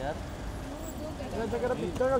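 Several voices talking over one another above a steady low rumble of vehicles.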